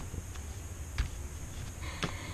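A few soft taps as a rubber stamp is dabbed onto a black ink pad, the clearest about a second in, over quiet room noise.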